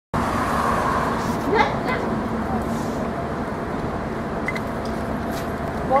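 Steady motor vehicle and street traffic noise with a low steady hum, and people's voices briefly about a second and a half in and again at the end.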